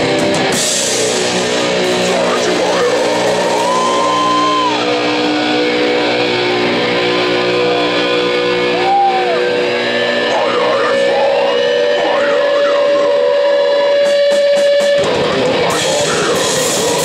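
Death metal band playing live: distorted guitars holding long notes, with a few high notes bending up and then down. The drums are sparse through the middle and come back with cymbal hits near the end.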